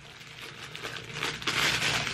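Rustling of clothing and packaging as garments are handled and pulled out of a pile, growing louder in the second half.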